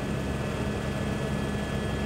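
Helicopter running steadily: a constant low engine and rotor drone under an even hiss.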